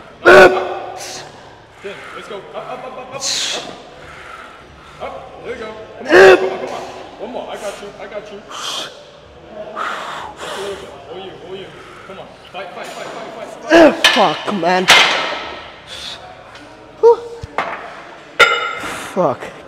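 A man grunting and exhaling hard as he strains through heavy reps of incline bench press on a Smith machine. The loud vocal bursts come several seconds apart and crowd together near the end. A few sharp metal clanks of the bar come late, as the set finishes.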